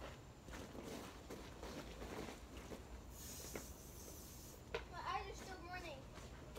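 Faint, distant children's voices over a low background, with a brief high hiss about three seconds in and a child's voice calling near the end.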